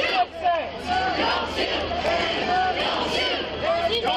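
Crowd of protesters shouting, many raised voices overlapping at once.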